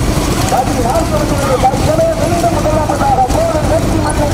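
Steady engine and road rumble from a vehicle running ahead of racing bullock carts, with men's voices shouting over it.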